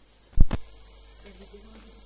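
A single sharp, low thump on the public-address system about half a second in. After it, a steady electrical mains hum and hiss carry on through the speakers.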